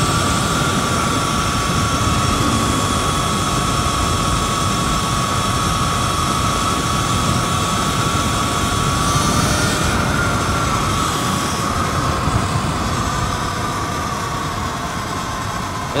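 Sur-Ron electric dirt bike on a BAC4000 controller cruising at speed: a steady high electric-motor whine over the rush of wind and tyre noise. The sound eases off a little near the end as the bike slows.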